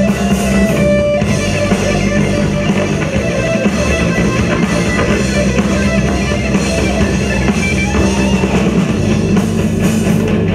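Live rock band playing loudly: electric guitars over a drum kit, a continuous dense passage of a song.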